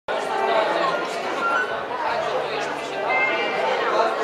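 Many voices talking over one another in a large room: the steady chatter of a gathered group, with no single clear speaker.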